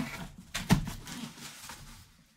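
Cardboard boxes handled by gloved hands: a knock at the start and a sharper one under a second in, with scraping and rustling of cardboard between, fading toward the end.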